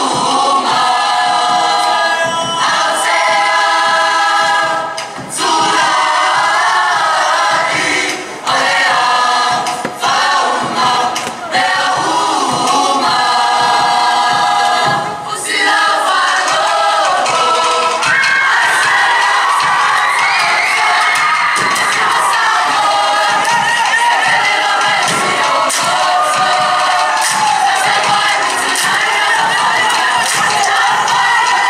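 A Samoan school group singing together in harmony, in phrases broken by short pauses, then in one long unbroken stretch from about halfway, with audience noise underneath.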